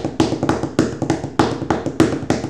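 Rapid tapping in a fast, even rhythm of about six taps a second, drumming out a hardcore punk beat by hand.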